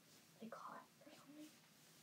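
Faint, brief murmured speech from about half a second in, otherwise near silence: room tone.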